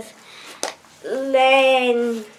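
A girl's voice holding one drawn-out syllable at a steady pitch for about a second, a wordless hesitation sound. It comes after a single light click of something being handled.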